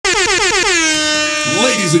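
Air horn sound effect opening the show: a quick run of blasts sliding down in pitch into one long held blast. A man's voice comes in near the end.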